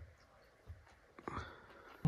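Faint chewing of a crumb-coated, crisp fried finger fish, a few soft crunches about every half second.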